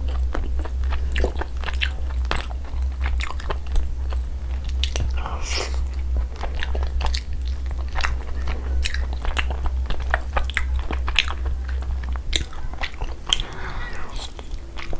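Close-miked chewing and biting of tandoori chicken, with a constant run of short mouth and lip clicks and smacks. A steady low hum runs underneath.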